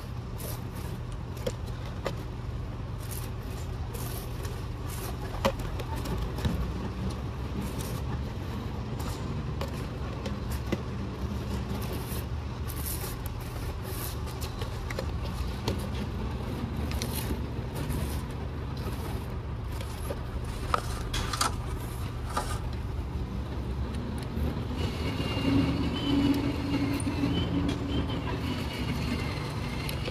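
A steady low engine rumble with scattered light clicks and taps; about 25 seconds in a higher wavering whine joins and the rumble grows a little louder.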